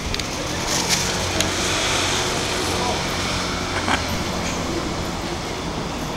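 City street ambience: steady traffic noise under a low engine hum, with a swell of noise a second or two in and a few light clicks.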